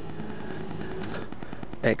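A steady low mechanical hum with faint steady tones, and a few light ticks about a second in.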